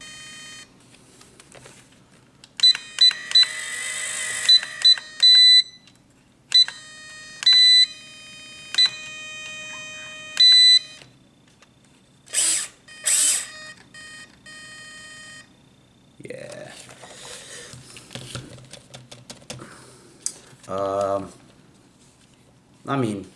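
Series of short, high electronic beeps from an RC crawler's radio gear, a few held longer, as the throttle trim is stepped, over a faint low hum. The trim is being set because the car sits braking with no throttle input.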